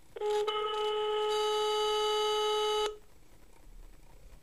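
Siemens mobile phone sounding one long, steady telephone tone for about two and a half seconds, which then cuts off suddenly: the signal that the call has not gone through and is blocked.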